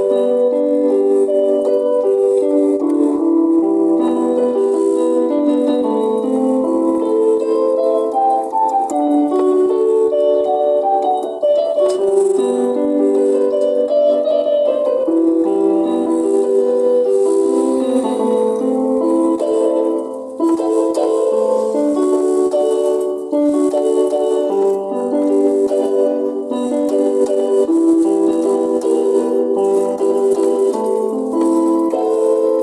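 Keyboard music: a melody over held chords in an organ-like tone, with no bass, the notes changing every half second or so.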